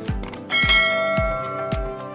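A bright bell-like notification chime rings about half a second in and fades over about a second, over music with a steady kick-drum beat about twice a second.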